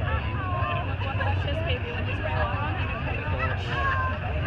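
Crowd chatter from spectators over a steady low engine rumble.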